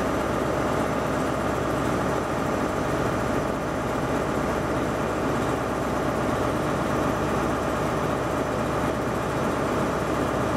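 Train engine idling steadily: an even hum with several held tones that does not rise or fade.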